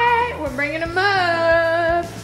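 A person singing two long held notes, the second sliding up and then holding steady.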